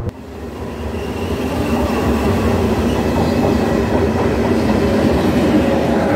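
A passenger train's coaches passing close by on the track: a steady rolling rumble of wheels on rail with some clickety-clack. It swells over the first second or so, then holds.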